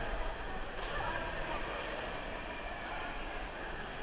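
Steady splashing and churning of water as a group of swimmers kick their legs together.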